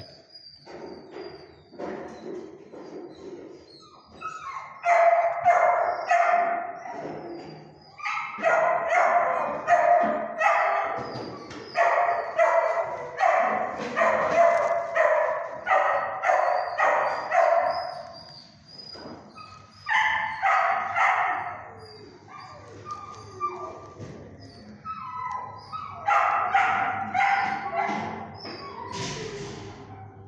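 A dog barking over and over in long runs of quick barks, two or three a second, with pauses of a few seconds between the runs.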